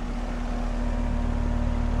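Residential R-410A air-conditioning condensing unit running: the compressor's steady hum under the even rush of the condenser fan.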